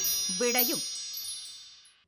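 Tail of a TV programme's intro jingle: a shimmer of high chime-like tones rings out and fades away over about two seconds. A short voice-like note with a bending pitch sounds about half a second in.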